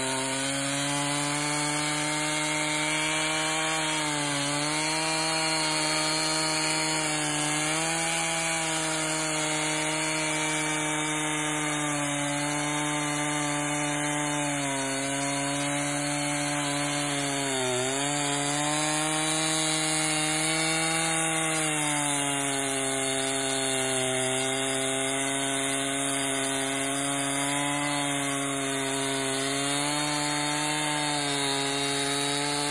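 Stihl MS 271 Farm Boss two-stroke chainsaw with a 20-inch bar running at full throttle while cutting through a large log. Its engine pitch dips briefly about six times as the chain loads up in the cut, then recovers.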